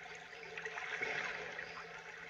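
Faint, steady rush of gentle water, like small waves lapping, from the soundtrack of a music video's closing seaside shot, with a low steady hum underneath.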